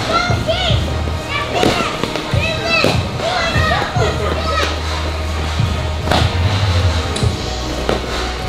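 Children's excited voices and shouts, with occasional sharp thuds of padded eskrima sparring sticks striking, over background music with a steady low bass.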